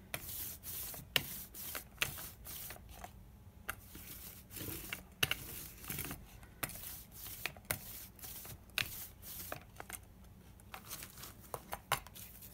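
Hand roller (brayer) rolling acrylic paint out over a homemade gelli printing plate: repeated back-and-forth passes, each a rubbing hiss with sharp clicks.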